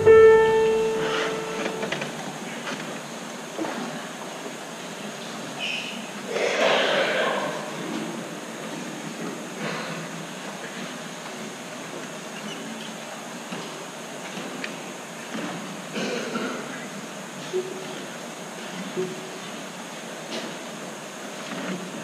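A held bowed-string chord from a string quartet dies away in the first two seconds. What is left is the quiet hiss of a concert hall, with faint scattered knocks and a brief louder noise about six seconds in.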